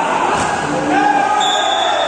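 Players and spectators shouting over one another during a volleyball rally, with a volleyball being struck, in a reverberant indoor sports hall.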